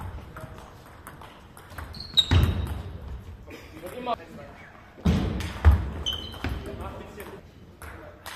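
Table tennis ball clicking back and forth between bats and table in rallies, echoing around the sports hall, with a few short high squeaks. People's voices rise loudly a couple of times.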